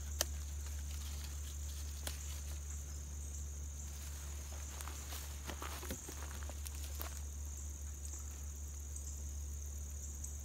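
Steady, even, high-pitched insect chorus trilling in the background, with a sharp click just after the start and a few softer clicks and rustles from dry plant stems being handled.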